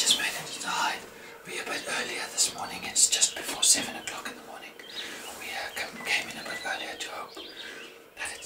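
A man talking in a low whisper, with hissy, breathy consonants.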